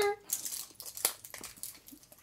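Foil candy packet crinkling as it is handled and opened by hand: short, irregular crackles, with a sharper one about a second in.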